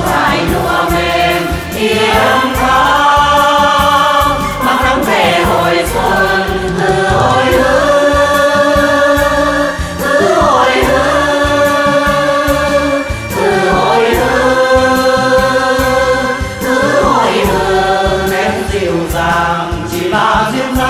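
A group of singers in traditional costume performing a Vietnamese Quan họ-style folk song together, with long held, gliding notes over an instrumental accompaniment with a steady low beat.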